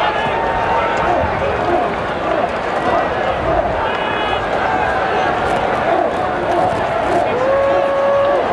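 Stadium crowd noise: a steady murmur of many voices, with scattered individual shouts.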